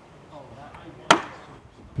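A single sharp blow of a long-handled mallet striking a splitting tool driven into a log to rive it open, about a second in, with a brief ring after the hit.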